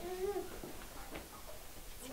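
A young child's brief, faint wordless vocal sound in the first half second, then low room noise.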